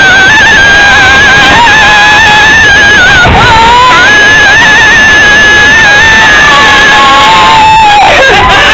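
Mine-train roller coaster's wheels squealing loudly on the track, a high, wavering tone held for several seconds. It breaks briefly about three seconds in and dies away with a falling slide near the end.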